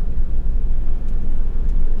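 Steady low rumble of road and engine noise inside a moving camper van's cabin while cruising.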